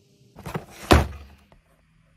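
A brief rustle followed by one loud thunk just under a second in, fading quickly.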